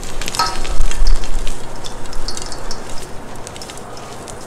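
A hand squeezing and crumbling a handful of plain white gym chalk mixed with baby powder, giving a dense crackling crunch of many small clicks. There is a dull thump about a second in.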